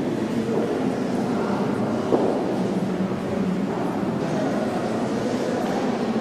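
Steady, indistinct background din, mostly low- and mid-pitched, without distinct events.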